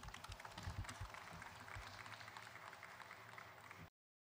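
Faint, light applause, a scatter of separate claps, that cuts off suddenly into silence just before the end.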